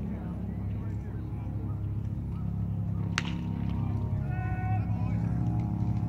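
A single sharp crack about three seconds in, with a brief ringing tail, typical of a metal baseball bat hitting a pitched ball, followed by a voice calling out over murmuring spectators.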